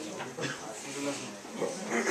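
Several students talking at once in small groups, a general murmur of overlapping voices with no single clear speaker.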